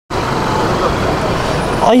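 Steady outdoor hiss of a rain-wet street: rain and traffic noise with faint voices of a crowd in the background. A man's voice starts just at the end.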